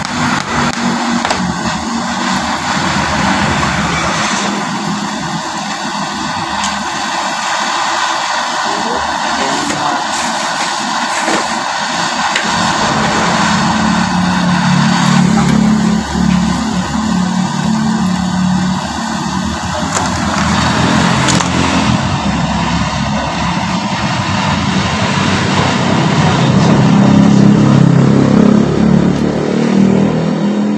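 Portable butane torch flame hissing steadily while it heats a fork spring, with a motor vehicle engine running nearby, its low hum growing louder and revving toward the end.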